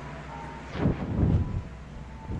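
Handling noise on a handheld phone's microphone: a sharp rub or bump a little under a second in, then a muffled low rumble for about half a second as the phone is moved and covered.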